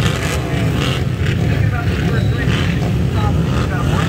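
Flat-track racing motorcycles running at the speedway, a steady low rumble with some engine pitch rising and falling, and voices over it.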